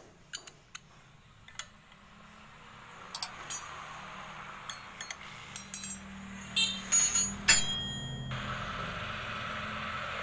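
Sound effects for an on-screen like-and-subscribe animation: several sharp clicks, a hiss that builds up, and brief ringing chime tones about seven seconds in.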